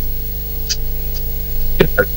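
Steady electrical hum and buzz on the remote link's audio line during a pause in speech, with a couple of faint clicks.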